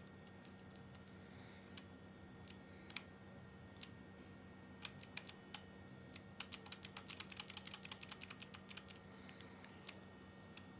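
Faint typing on a keyboard. Scattered single key clicks come first, then a quick run of clicks, several a second, from about six to nine seconds in.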